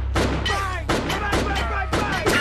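Gunshots from a film soundtrack: a rapid string of shots about three a second, over a steady low hum.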